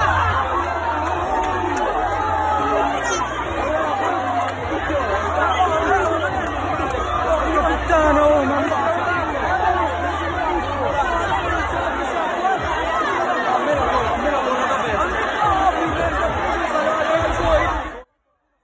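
A dense crowd: many voices talking and calling over one another at once, with the low bass of music underneath.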